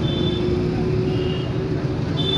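Street traffic noise: a steady low rumble of engines with a faint held hum, and two brief high tones, one near the start and one a little past halfway.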